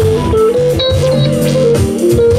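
A live jazz band playing: a keyboard line over a plucked double bass repeating a low figure, with drum kit hits keeping the beat.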